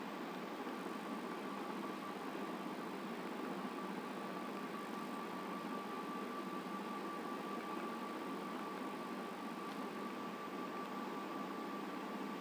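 Steady background hiss of room noise with a faint, steady high whine running through it.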